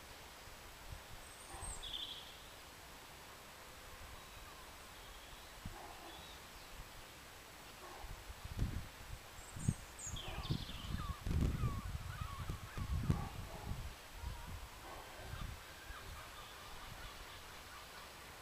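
Quiet outdoor ambience with a few faint, short bird chirps, and in the middle several seconds of irregular low rumbling gusts of wind on the microphone.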